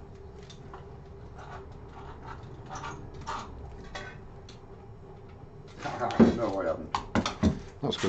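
Faint scattered knocks and clicks over a steady low hum, then a person's voice starting about six seconds in and running to the end.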